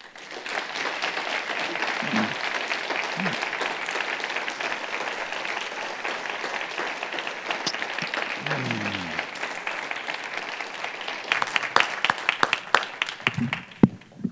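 Audience applauding at the end of a lecture: steady clapping that thins out about eleven seconds in to a few scattered claps.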